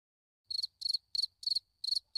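Cricket chirping sound effect: short, high chirps about three a second, starting about half a second in after dead silence. It is the stock comedy cue for an awkward silence, here after a co-host who is absent is introduced.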